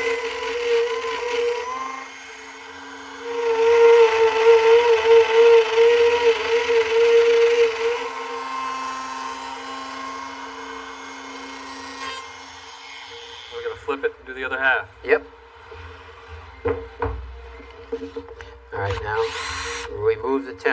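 Trim router with a bearing-guided straight bit running at a steady high whine. It is loudest, its pitch wavering under load, from about three to eight seconds in as the bit cuts into the wood, after a brief quieter dip. It then carries on at a lighter whine.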